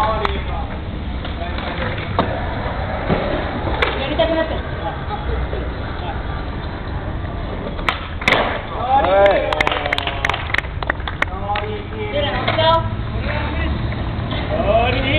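Skateboard wheels rolling on a hard outdoor court, with a quick run of sharp board clacks and impacts about eight seconds in, as the board pops and lands. Spectators shout and call out just after.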